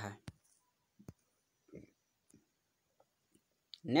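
Mostly quiet, with a handful of short, sharp clicks spread through it; the clearest comes just after the start and another about a second in. A man's voice ends a word at the start and speaks again near the end.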